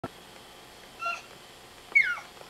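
A baby's high-pitched squeals: a short one about halfway through, then a louder one near the end that slides down in pitch.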